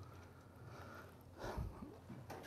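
Quiet room tone with a brief, faint, voice-like sound about one and a half seconds in.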